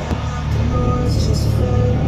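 Steady low drone of a semi-truck's engine and road noise heard from inside the moving cab, with music playing over it.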